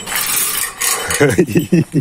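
Light metallic clinking for about the first second, then a man laughing in a quick run of short bursts.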